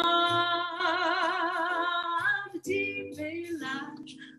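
A woman singing a French chanson, holding a long final note of a line with a wide vibrato that ends a little over two seconds in, then starting the next phrase.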